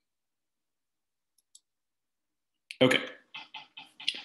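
Dead silence for almost three seconds, broken only by one faint tick, then a man says "okay" followed by a few short, muffled throat noises in quick succession.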